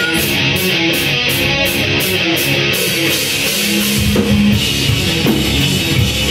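Live rock band playing an instrumental passage with electric guitars, bass and drum kit, loud and steady. An even cymbal beat runs through the first half, and the low end fills out about four seconds in.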